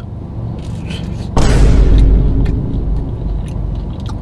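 A sudden deep boom about a second and a half in, fading out over about two seconds into a low rumble.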